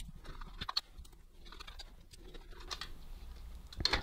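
Faint, scattered clicks and ticks of a screwdriver and plastic parts as T15 Torx screws are driven back into a fan's plastic motor housing.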